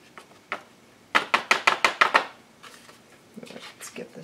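A folded cardstock card tapped on its edge against paper on a tabletop, a quick run of about eight sharp taps starting about a second in, knocking the loose glitter off the glued marks.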